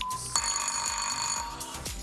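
Electronic quiz buzzer-bell signal sounding for about a second and a half over background music with a steady beat. It starts abruptly and cuts off sharply, and it marks a team buzzing in to answer.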